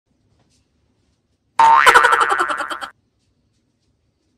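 Comedy sound effect: a sudden, loud warbling tone that pulses rapidly and fades away within about a second and a half.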